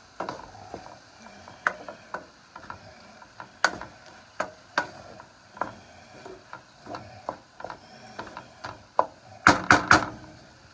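Wooden spoon stirring mixed vegetables in a frying pan: irregular scrapes and knocks against the pan, with a cluster of louder clatters near the end.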